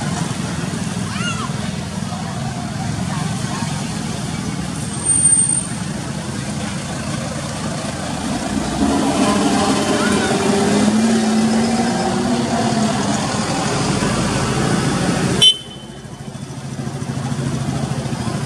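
Steady outdoor noise of road traffic with people's voices, and a brief louder sound about five seconds in; the sound changes abruptly a little before the end.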